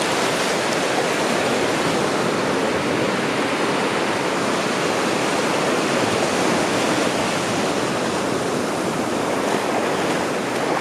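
Shallow surf washing up the sand at the water's edge, a steady rushing of breaking water.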